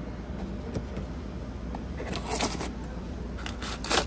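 Decorative garden stones scraping and knocking against each other as they are slid in and out of a cardboard display box, a few sharp clicks near the end, over a steady low store hum.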